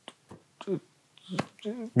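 A few sharp clicks, the loudest about one and a half seconds in, between short quiet voice sounds.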